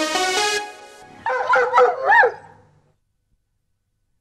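Electronic synth music dies away in the first second. Then a dog barks about four times in quick succession, the last bark longer and loudest.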